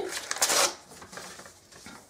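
Paper envelope being opened by hand: a brief rustle about half a second in, then faint crinkles that die away.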